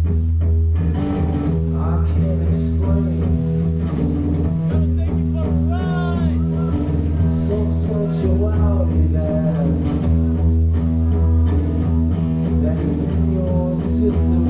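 Live rock band: electric guitar and bass playing a loud, sustained droning passage with notes bent up and down about six seconds in, without a clear drumbeat.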